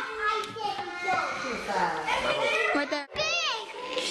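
Children's voices, talking and playing over one another in a small room. There is a brief break about three seconds in, followed by a high, swooping squeal.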